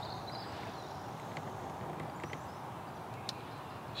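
Quiet outdoor background with a few faint ticks and one sharper click a little over three seconds in, with horses standing close by.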